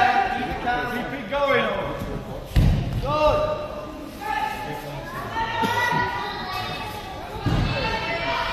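Two heavy thuds, about two and a half seconds in and again near the end, over indistinct voices echoing in a large hall.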